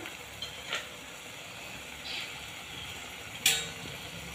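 Eggplant bharta sizzling gently in a clay pot over a low flame, a steady soft hiss. A faint click comes under a second in and a sharp click near the end.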